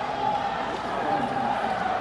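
Steady crowd noise from a large arena audience, many distant voices blending together with faint voices standing out here and there.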